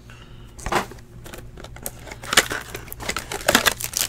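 Clear plastic trading-card pack wrapper crinkling and rustling as packs are torn open and handled, in a few short rustles.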